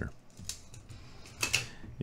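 Light clicks and taps from handling a tape measure and an aluminium antenna on its metal mount, with one brief, louder rattle about one and a half seconds in.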